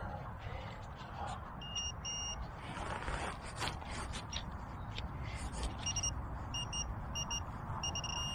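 Handheld metal-detecting pinpointer beeping as it is probed into a dug hole: two short high beeps about two seconds in, then a quickening run of short beeps near the end as it closes on the target. Crackly scraping and rustling of soil and dry leaves sound under the beeps.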